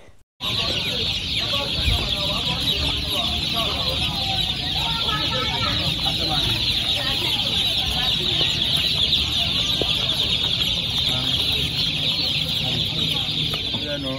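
Dozens of day-old broiler chicks peeping together without pause, a dense high-pitched chirping that starts after a brief silence at the very start.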